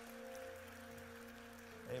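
A single musical note held steady by an instrument, with faint scattered clapping underneath.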